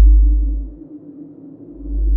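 Dark film-score sound design: a low steady drone with slow, deep bass pulses that swell and fade. One pulse dies away in the first second, and the next builds up near the end.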